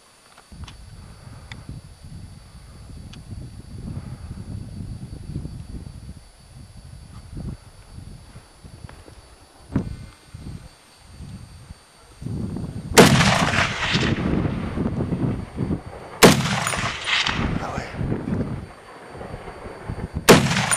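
Two hunting-rifle shots at a red deer about 200 m away, about three seconds apart, each followed by a long echo rolling back across the valley. The shots miss, in the shooter's own words. Before them, a low rumble on the microphone.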